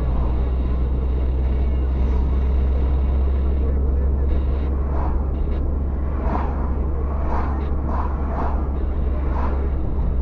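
Steady low rumble of engine and tyre noise inside a moving car's cabin, with muffled voices from about five seconds in.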